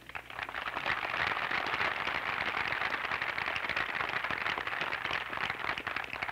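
An outdoor audience applauding: it builds within the first second, holds steady, then dies down near the end.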